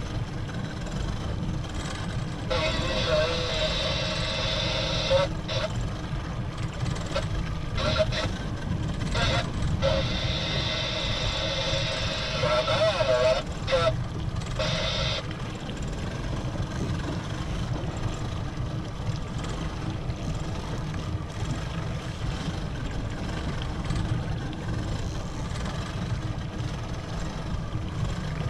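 Twin outboard motors running steadily at low speed with a low rumble. From a few seconds in to about halfway, a high whirring starts and stops several times over it.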